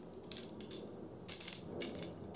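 Glass grit mixed into the shaft epoxy grinding as the graphite shaft is twisted into the bore of a TaylorMade Stealth 2 7-wood head: a handful of short, gritty scrapes. The grinding glass is centring the shaft in the bore.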